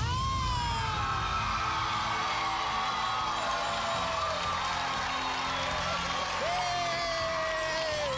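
A young woman singing over backing music: she slides down from a high note at the start and holds a long sustained note near the end.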